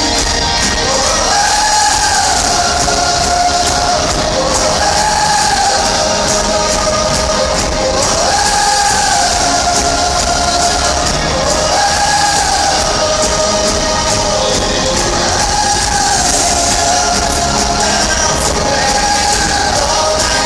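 Live pop song over an arena PA, recorded from within the crowd: a singer's melodic line repeats about every three and a half seconds over the band, with crowd noise and cheering underneath.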